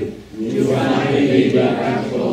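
A congregation reading a Bible passage aloud in unison, many voices speaking together in a loose, overlapping blur, with a brief dip just after the start.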